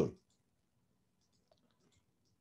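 The tail of a spoken word, then quiet room tone with a few faint computer mouse clicks about one and a half seconds in, as the on-screen pen markings are cleared.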